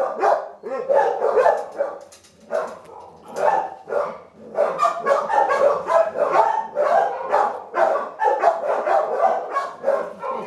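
Dogs barking in quick succession, with a quieter spell about two to four seconds in.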